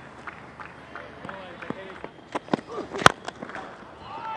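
Open-air cricket ground ambience with faint distant voices and a few sharp clap-like knocks, the loudest just after three seconds in.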